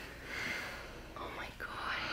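A person whispering in short, breathy bursts.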